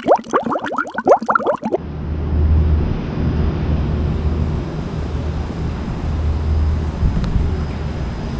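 A quick run of bubbly, gliding tones for the first two seconds, then a steady low rumble with hiss, outdoor background noise.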